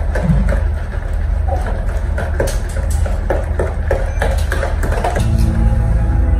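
A spoon stirring and clinking in a plastic mixing bowl of egg and sugar batter, with scattered irregular knocks, over a steady low hum. A few steady musical tones come in about five seconds in.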